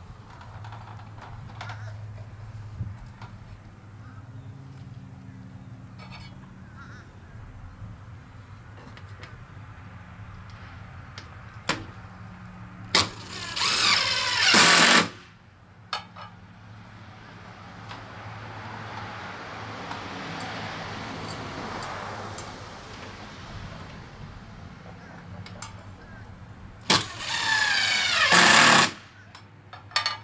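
Cordless power driver driving screws up into soffit panels, in two bursts of about two seconds each, one about halfway through and one near the end, the motor speeding up and slowing down. A low steady hum runs underneath.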